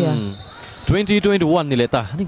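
A commentator speaking over a volleyball match, with a sharp thump of the ball being hit about a second in.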